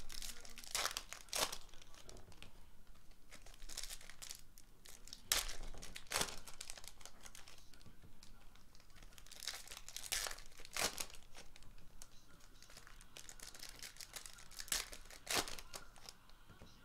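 Foil wrappers of 2019 Panini Illusions football card packs crinkling and being torn open by hand, with cards being handled. Sharp crackles come every few seconds over a softer rustle.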